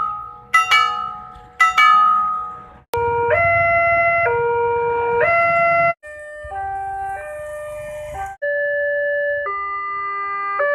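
Railway level-crossing warning signals cut one after another: a crossing bell striking in quick double strokes about once a second, then, after an abrupt change about three seconds in, an electronic two-tone crossing alarm alternating between a lower and a higher tone about once a second, followed by other electronic warning tones stepping in pitch.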